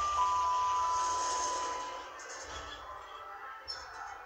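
Orona lift's arrival chime: a two-note falling ding-dong, the lower note sounding just after the start and ringing out for about two seconds as the car stops at a floor. A faint click follows near the end.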